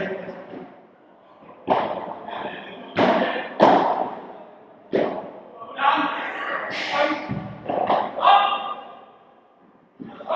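Padel rally: a series of sharp ball strikes off padel rackets and the court's walls, about eight hits roughly a second apart, echoing in a large indoor hall.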